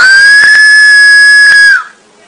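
A person screaming: one long, very loud, high-pitched scream that rises, holds at one pitch for almost two seconds, then slides down and stops near the end.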